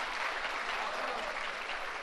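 Audience applauding, many hands clapping in a steady, even patter.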